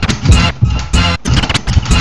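Turntablism on vinyl decks and a DJ mixer: a record being worked by hand and cut in and out with the mixer, chopping the music into short, choppy bursts several times a second.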